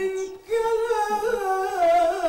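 A solo male voice chanting an Islamic ibtihal (devotional supplication), holding long ornamented notes with a wavering pitch. There is a short break for breath about half a second in, then a long note that slides downward near the end.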